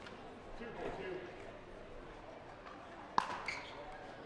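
A pickleball paddle striking the ball on the serve: one sharp pop about three seconds in, followed by a softer tick, over a low murmur of crowd voices.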